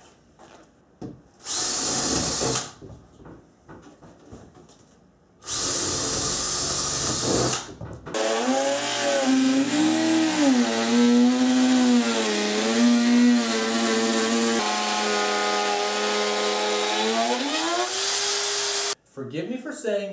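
A cordless drill bores through a 5 mm plywood wall panel in two short bursts, drilling holes to mark where the windows go. Then a RotoZip spiral saw with a ball-bearing guide bit runs continuously for about eleven seconds, cutting through the plywood with a whine that rises and falls in pitch, and stops suddenly near the end.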